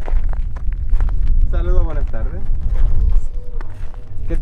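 Wind buffeting the microphone, a heavy, uneven low rumble, with a person's voice briefly about one and a half seconds in.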